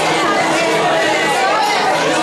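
Crowd chatter: many people talking at once in a crowded room, with a steady low tone underneath.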